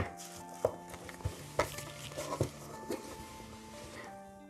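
Soft background music with held tones, under a few faint clicks and rustles of a paper manual and a cardboard box being handled.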